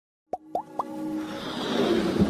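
Three quick pops, each gliding upward and pitched higher than the last, then a swelling whoosh that grows louder: the sound effects of an animated logo intro.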